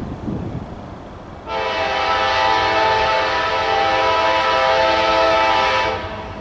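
Locomotive air horn, a Nathan K5LA five-chime on CSX GE AC44CW 173, sounding one long steady chord blast for a grade crossing. It starts sharply about a second and a half in and cuts off near the end, over a low rumble.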